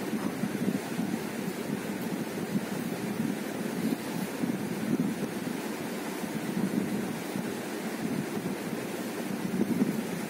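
A steady, low rushing noise that flutters slightly in level, with no clear pitch or distinct strikes.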